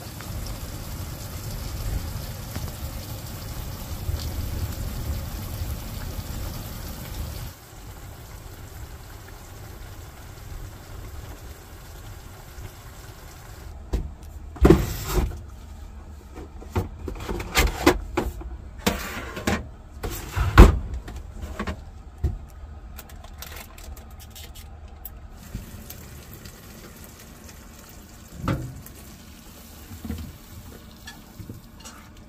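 Wind buffeting the canvas walls of a pop-up truck camper, a steady rumble with hiss for the first seven seconds or so. After that come scattered sharp knocks and clatters, the loudest about twenty seconds in.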